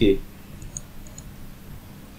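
A few faint computer mouse clicks in quick succession, about half a second to a second in, over low hiss.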